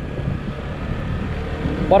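Shineray Urban 150 scooter's single-cylinder engine running steadily at low road speed as it rolls over cobblestones, a steady low rumble.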